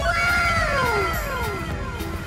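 Anime "wow" sound effect: a drawn-out, voice-like "wooow" that starts at once and falls steadily in pitch over about a second and a half.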